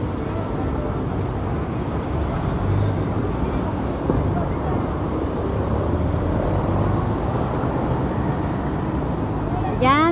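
Busy outdoor street ambience: a steady wash of background voices from passers-by mixed with traffic noise.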